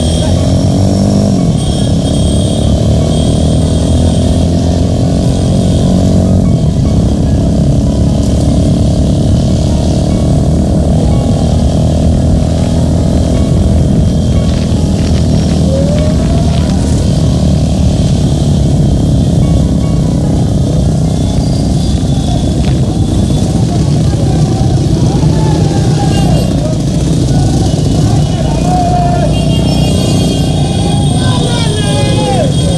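Motorcycle engines running in a moving column of motorbikes, heard from one of the bikes, with an engine's pitch rising in the first couple of seconds. Voices and music are mixed in throughout.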